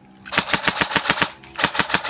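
Customised Tokyo Marui next-generation airsoft M4, with an electronic trigger unit and a samarium-cobalt motor, firing two rapid bursts of evenly spaced shots. The first burst starts shortly in and lasts about a second; the second starts near the end.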